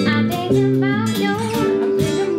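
Live band jam: electric and acoustic guitars playing together, with a voice singing over them.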